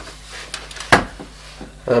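A single sharp knock about a second in, as a handheld multimeter is set down on a wooden desktop, with a few faint small clicks and handling noises around it.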